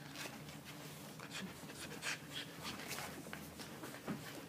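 Puppies wrestling on a fabric sheet: faint scuffling and rustling of paws and bodies on cloth, with a few small puppy sounds.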